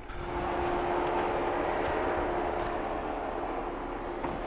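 An off-road vehicle's engine running close by as it pulls up. It is a steady sound with a held tone in it, easing slightly in the second half.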